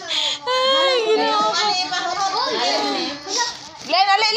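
Several voices, many of them children's, talking and calling out over one another in a room.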